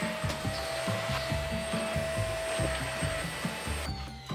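Canister vacuum cleaner running as its floor nozzle is pushed over a quilted kotatsu mat, a steady rushing noise with a thin whine that cuts off suddenly near the end. Background music with a bass line plays underneath.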